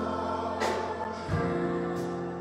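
Gospel choir singing held chords during a church service, with a change of chord about two-thirds of the way through.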